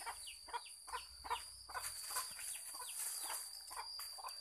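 Birds calling: a run of short chirps, each falling in pitch, a few a second, over a steady high-pitched whine.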